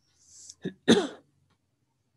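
A person clearing their throat: a short sound, then a louder clear about a second in.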